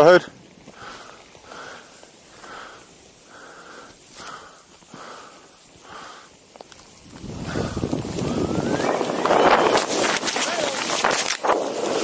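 Rushing noise of a snowboard running through snow, with wind on the microphone, building from about seven seconds in as the rider picks up speed and staying loud to the end.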